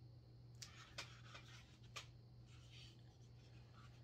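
Faint rustling and scraping as a small Santa figurine is handled close to the microphone, a handful of soft strokes over a low steady hum.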